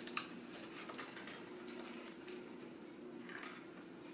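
Faint handling noise of wire fairy lights being bent and pressed against the back of a stretched canvas: a few light ticks, the sharpest just after the start, over a low steady hum.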